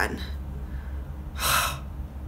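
A woman's single short, breathy gasp of disgust about one and a half seconds in, reacting to the foul smell of a body scrub.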